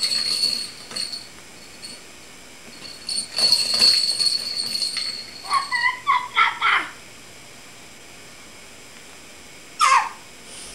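A baby squealing and whining in short high-pitched bursts, with a quick string of short cries about six seconds in and a brief sharp squeal near the end.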